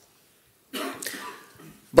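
A man's single cough, starting a little under a second in and trailing off.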